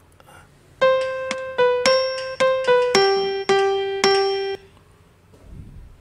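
A keyboard with a piano sound plays an eight-note phrase, C–B–C–C–B–G–G–G, opening on a longer C and ending on three G's. It is the reference melody for the solfège phrase "đô si đô đô si son son son" in a sight-singing exercise.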